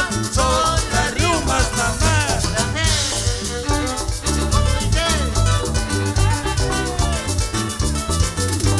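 Live cumbia band playing an instrumental passage: saxophones carrying a melody over keyboard, bass and drums, with a metal güiro scraped on a steady beat.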